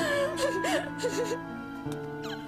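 A woman wailing and sobbing in distress, her voice wavering up and down for about a second and a half before breaking off, over sustained dramatic background music.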